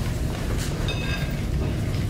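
Steady low rumble of room noise, with a few faint short squeaks and rustles between about half a second and a second in.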